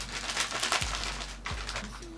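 A plastic chocolate pouch crinkling as it is handled and waved about, a dense run of irregular crackles.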